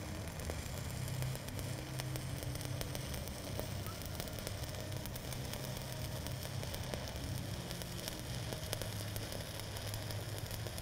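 Stick (SMAW) welding arc crackling and sizzling steadily as a rod burns off, running a cap bead on steel pipe, with a steady low hum underneath.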